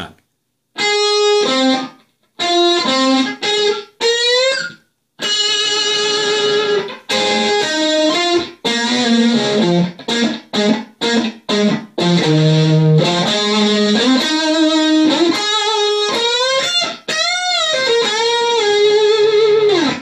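Solid-body electric guitar playing a lead solo phrase: single notes and double stops with string bends and vibrato, in short bursts with brief gaps over the first few seconds, then running on without a break.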